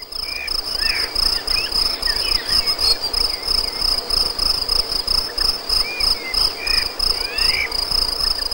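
Steady high-pitched insect trilling, typical of crickets, with a few short rising and falling chirps scattered over it.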